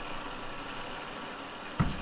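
Milling machine running steadily as its end mill works the edge of a quarter-inch aluminum plate, a continuous even hum with no separate cuts or knocks.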